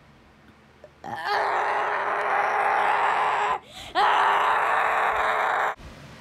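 A person's voice making two long, loud, noisy vocal outbursts. The first starts about a second in and the second follows a short break. Each rises in pitch at its start and then holds steady.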